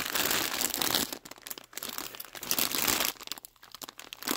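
Clear plastic bag full of ribbons crinkling as it is handled, in irregular rustles that are heaviest in the first second and die away near the end.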